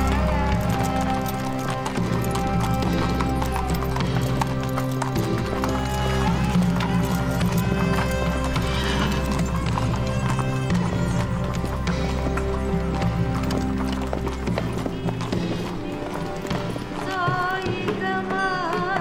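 Horses' hooves clopping at a walk on a stone path, over steady film-score music with a low drone. Near the end a singing voice with a wavering melody comes in.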